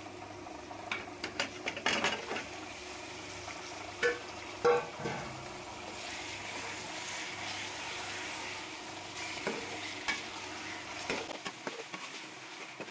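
Raw chicken pieces sizzling as they fry in onion-tomato masala in an aluminium pot, with a steel ladle stirring and knocking against the pot's sides. The loudest knocks fall in the first five seconds, and the steady sizzle runs underneath.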